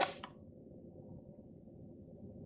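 Plastic lid of a De'Longhi KG79 burr grinder's ground-coffee container being pulled off: a sharp click and a few quick ticks at the start, then only faint room tone.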